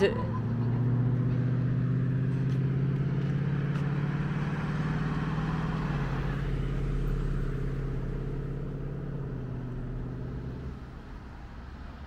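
A car driving past on the road: its engine hum and tyre noise build, the pitch drops as it passes about six seconds in, then the sound fades away by about ten seconds.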